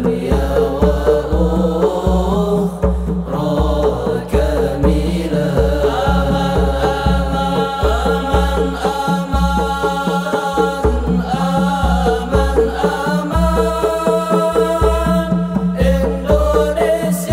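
Male voices singing sholawat together over a hadrah ensemble of rebana frame drums and hand drums, with a deep bass drum stroke repeating steadily about twice a second.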